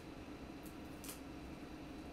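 Faint rustles of paper cardstock being handled, two brief ones about two-thirds of a second and a second in, over a low steady room hum.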